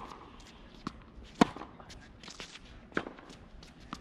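Tennis rally on a hard court: a sharp, loud racket strike on the ball about a second and a half in, with quieter thwacks of the ball bouncing and being hit at the far end before and after it.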